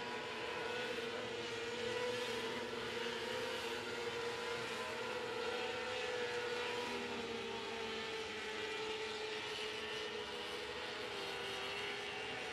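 A pack of winged 600cc micro sprint cars racing around a dirt oval. Their high-revving motorcycle engines make a steady drone that wavers slowly in pitch.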